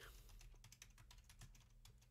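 Faint computer keyboard typing: a quick run of keystrokes, thinning out near the end.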